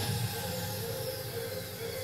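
A quiet break in a pop song played in a room: the bass beat drops out, leaving a faint repeating note over hiss.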